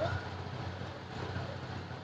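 1986 Toyota Starlet's four-cylinder engine idling steadily with a low hum; the seller calls the engine good and healthy.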